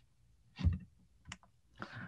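A couple of clicks from a computer as a presentation slide is advanced: a louder click with a low thud just over half a second in, then a thinner, fainter click a little later.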